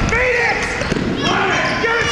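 Basketball dribbled on a hardwood gym floor, with two sharp bounces about a second apart.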